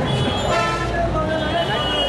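Vehicle horns sounding in street traffic: a held horn comes in about half a second in, and a second one joins near the end, over crowd voices.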